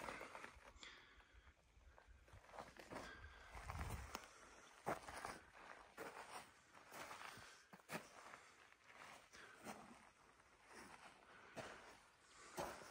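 Near silence with faint, scattered footsteps on gravel and loose stones, a few separate scuffs and clicks with quiet between.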